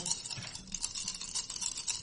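Dice being shaken in a hand, rattling against each other in a dense, irregular run of small clicks.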